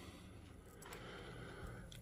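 Near silence: faint room tone with a couple of faint clicks.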